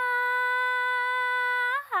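A woman singing a cappella, holding one long, steady note without vibrato, then sliding down to a lower note near the end.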